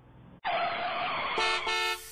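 A short rushing noise, then a vehicle horn sound effect that honks twice in quick succession near the end.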